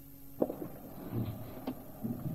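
Two sharp clicks a little over a second apart, with faint low rustling between them, over a steady background hiss.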